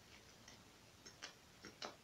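Near silence with a few faint mouth clicks from chewing a bite of taco, the last two close together near the end.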